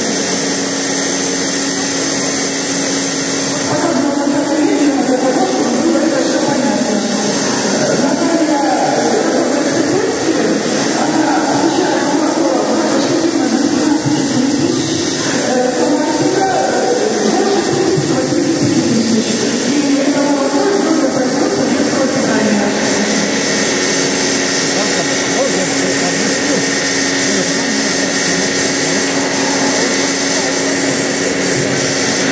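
People talking over a steady mechanical hum, plausibly the vacuum pump of a milking machine running while the milking cluster is on a cow's udder.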